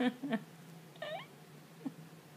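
A toddler's short high-pitched squeals and vocal sounds during play, with a brief rising-and-falling squeal about a second in, mixed with a few short laughing breaths.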